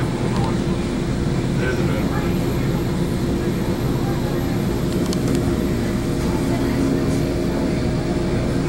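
Steady running noise inside a moving Metrolink commuter train car: an even rumble with a constant low hum.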